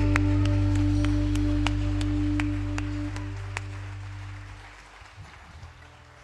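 A live band's closing chord on keyboard, bass and guitars, held and fading away until it dies out about five seconds in. A few scattered hand claps sound over it.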